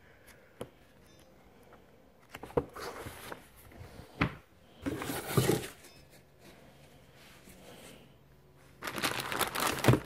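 Unboxing handling noise: light paper and cardboard rustles and taps, then a burst of clear plastic bag crinkling near the end as the packaging is handled.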